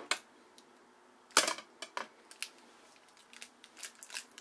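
Clicks and knocks of a toy sonic screwdriver on a stick being handled and lifted off a wooden table. One sharper knock comes about a second and a half in, with lighter clicks after it.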